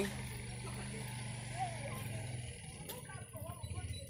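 Motorcycle engine running steadily at a distance, a low hum that fades about two and a half seconds in.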